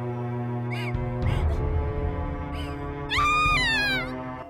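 A woman's short sobbing cries over sustained, sombre background music, then a long high scream about three seconds in that slides down in pitch.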